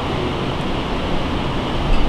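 Steady background noise: an even low hum and hiss, with no distinct events.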